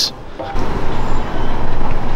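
Loud, steady road-traffic noise, as of a vehicle passing on the street, swelling about half a second in.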